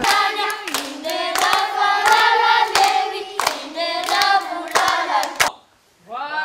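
A group of children singing a song together in unison, clapping their hands in rhythm as they sing. The singing and clapping stop abruptly near the end.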